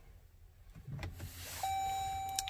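A 2021 Dodge Durango's instrument-cluster warning chime sounding as the ignition is switched on: a faint whir and a click, then a steady high tone that starts a little past halfway and holds.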